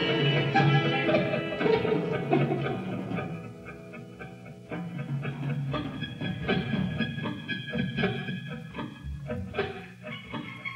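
Live psychedelic rock band playing an instrumental jam led by electric guitar. A dense, full passage thins out about three seconds in to a quieter stretch, then goes on with sparser picked guitar notes and light percussion.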